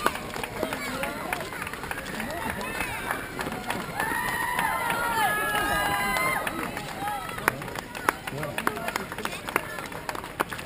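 Many runners' footsteps slapping on the asphalt road as a pack streams past, with spectators' voices calling out, most strongly for a couple of seconds midway.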